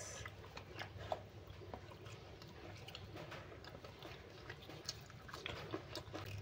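Faint chewing and small clicking mouth sounds of someone eating a mouthful of rice, fried chicken and greens taken up by hand.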